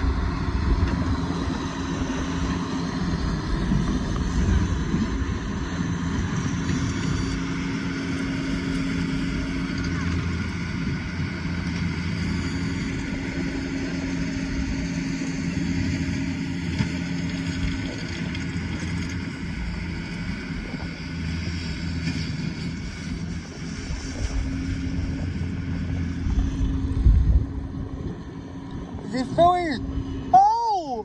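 A steady engine-like hum holding a constant pitch, over low rumbling noise, heard through a muffled, covered microphone.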